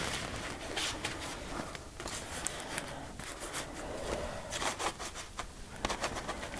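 Plastic bowl scraper dragged over a stencil on wet paper: repeated scraping and rubbing strokes, with a few light clicks.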